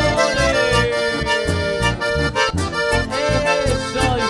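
Live chamamé band playing an instrumental passage, led by accordion over a steady beat of bass and percussion.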